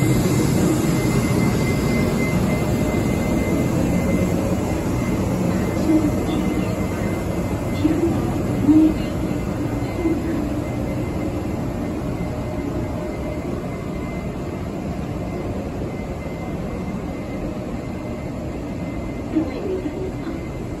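Electric-locomotive-hauled passenger train rolling slowly past a platform in an underground station, with a steady rumble of wheels on rail that fades gradually. A faint steady high tone runs through it, and a few louder clunks come from the wheels and cars.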